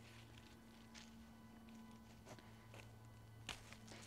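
Near silence: a faint steady hum with a few soft clicks from hands handling rose stems, the clearest about three and a half seconds in.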